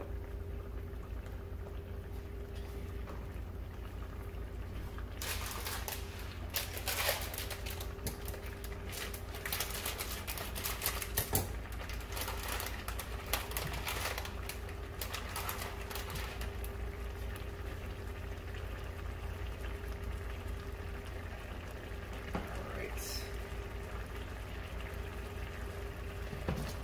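Tomato sauce simmering and reducing in a large stainless steel pan, its bubbles popping in quick, irregular clicks that are thickest in the middle stretch, over a steady low hum.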